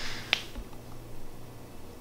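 A single short, sharp click about a third of a second in, over a low, steady room hum.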